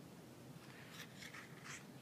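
Faint rustling of a paper book page being turned, a few short scrapes just after the start, over quiet room tone.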